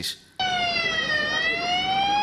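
An emergency vehicle's siren starts suddenly about half a second in: one tone that dips slightly in pitch and then climbs slowly and steadily.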